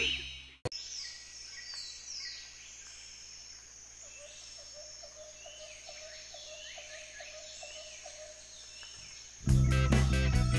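Music cuts off just after the start, leaving a quiet outdoor ambience of birds chirping, with short falling whistles and a run of short repeated calls. Strummed guitar music starts near the end.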